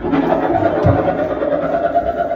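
Free improvised live music: a dense, sustained wash of noisy sound that comes in suddenly, with a low thump just under a second in.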